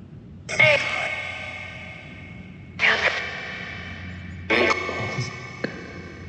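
Necrophonic ghost-box app on a smartphone putting out three bursts of heavily echoed, voice-like sound, each starting suddenly and fading over a second or two. The investigators take its output for spirit speech and caption the last as 'All is good'.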